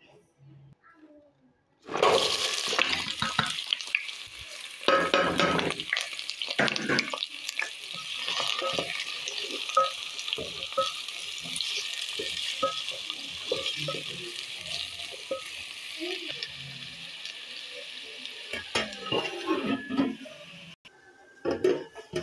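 Sliced carrots and chopped red onion sizzling in hot oil in a stainless steel pot, starting suddenly about two seconds in as they go into the oil, with clicks and scrapes of stirring through the frying. The sizzle fades near the end.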